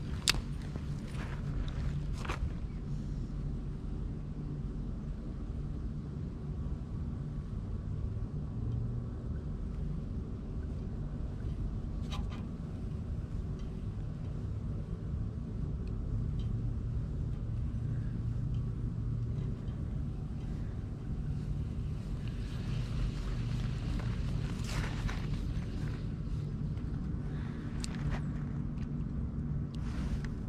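A steady low rumble of outdoor background noise, with a few sharp clicks from handling a spinning reel, the loudest just after the start.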